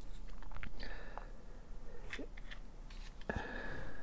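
Small crunching and scraping of a hand-held pin-vise drill bit turning in a plastic whoop frame's mounting hole, with a sharp knock about three seconds in.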